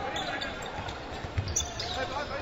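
Arena crowd noise with a basketball being dribbled on a hardwood court, a few low bounces standing out about one and a half seconds in.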